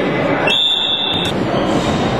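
A referee's whistle blown once for just under a second, a steady high-pitched blast over the continuous noise of play in a sports hall.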